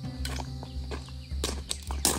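Footsteps crunching on a gravel trail, a few irregular steps over a faint steady low hum.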